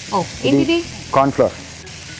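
Vegetable stuffing of sweet corn, beans and capsicum sizzling in a frying pan as a wooden spatula stirs it, with a voice talking in short bursts over it.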